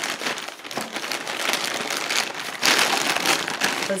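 Packaging crinkling and rustling as a parcel is handled and unwrapped by hand, getting louder and busier about two and a half seconds in.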